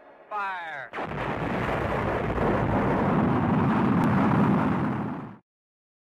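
Logo sound effect: a short falling pitched sweep, then a loud rocket-launch rumble of rushing noise lasting about four seconds that cuts off suddenly.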